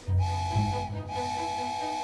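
Narrow-gauge locomotive's whistle blown twice, a short blast then a longer one, on one steady high note with a hiss of air. A low rumble sits under the first blast.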